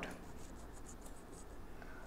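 Faint scratching and light clicks over quiet room tone, from a computer mouse being clicked and dragged to select text.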